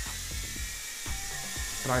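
JJRC H56 mini quadcopter's small motors and propellers whirring in a steady high-pitched whine as it hovers and is steered by hand gestures.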